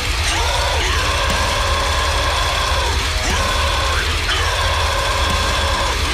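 A loud heavy metal track playing: distorted guitars holding notes over fast, dense low drumming, with several sounds that swoop down in pitch.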